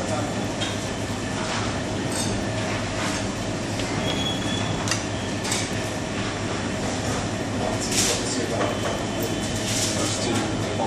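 Steady low rumbling room noise with scattered short clinks and scrapes of metal spoons digging into glass sundae bowls.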